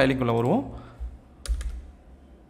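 Computer keyboard keystrokes: a single sharp key click about a second in, then a quick cluster of clicks about one and a half seconds in.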